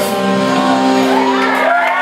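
Live band of electric guitar, upright bass and drums ending a song on a held final note, with shouts and whoops from the audience near the end.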